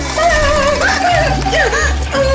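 Background music: a wavering melody over steady bass notes.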